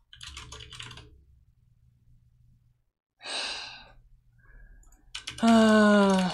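A short run of computer keyboard clicks, then a breathy exhale about three seconds in. Near the end comes a man's drawn-out voiced sigh, falling slightly in pitch and the loudest sound here.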